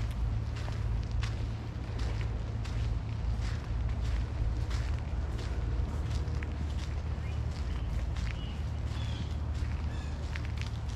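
Footsteps walking on a paved path, a run of light irregular steps over a steady low rumble.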